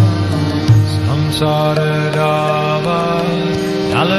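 Devotional chanting (kirtan): a mantra sung over long sustained instrumental notes with drum strokes.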